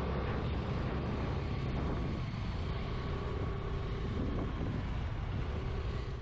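Steady wind rush on the microphone with the low engine and road rumble of a motorcycle being ridden along a highway.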